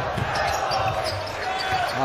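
Basketball bouncing on a hardwood arena court, with a few sharp bounces in the first half second over the hall's background noise.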